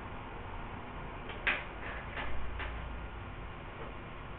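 Quiet classroom room tone with a steady hiss, broken about a second and a half in by a handful of light clicks or taps over about a second, the first the loudest.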